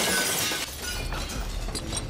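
Glass window panes shattering as a wooden barrel is thrown through them, the broken shards clattering and tinkling down and fading within about half a second.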